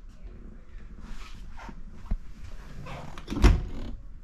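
Wooden kitchen cabinet door under a sink being opened: a small sharp click about halfway through, then a louder knock near the end as the door comes open.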